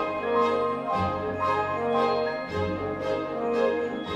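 Grand piano and symphony orchestra playing a contemporary concerto together: held orchestral chords with a steady pulse of note attacks about twice a second.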